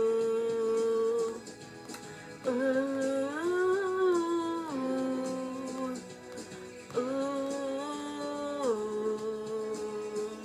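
A woman humming a wordless melody into a handheld microphone in long held notes that step up and down in pitch, with short breaks between phrases.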